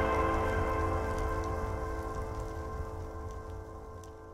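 The outro of a melodic dubstep track fading out: held synth chords over a low bass drone, dying away steadily, with faint scattered crackle in the highs.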